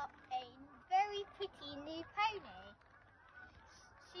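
A girl's voice speaking or exclaiming in short bursts, the words unclear, dropping to quiet in the last second or so.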